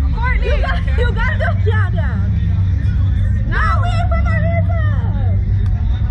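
Two women's high-pitched voices squealing and exclaiming in nervous excitement, strapped into a slingshot thrill ride, with a steady low rumble underneath.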